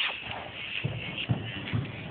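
Hoofbeats of a horse running loose on soft indoor-arena footing: three dull thuds about half a second apart.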